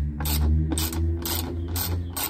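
Hand ratchet spanner with a T20 Torx bit clicking as it is swung back and forth, loosening a tail-light retaining screw; about four short ratchet bursts, roughly two a second.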